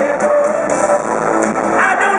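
Live band music in a concert arena, loud and steady: drums keep a regular beat under electronic and keyboard sounds, with no clear singing.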